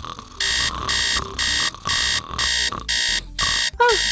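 Electronic alarm clock beeping: a run of identical high-pitched beeps, starting about half a second in and repeating evenly at just under two a second.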